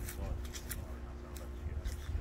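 Wind rumbling on a phone microphone outdoors, with a steady low hum underneath and a few short handling clicks.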